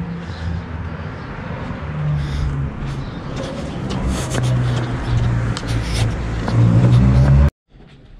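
A car engine running close by, its low hum shifting in pitch and growing louder over several seconds, then cutting off suddenly near the end.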